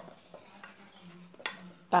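Quiet scraping of a metal kitchen utensil against a pan, with a single sharp clink about one and a half seconds in, over a faint low steady hum.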